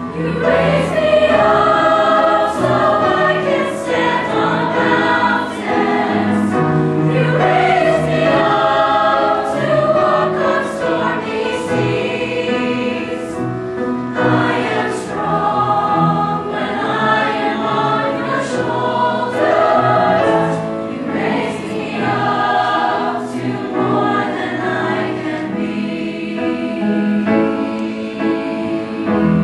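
School choir of boys and girls singing together, coming in loudly at the start and carrying on at a steady level.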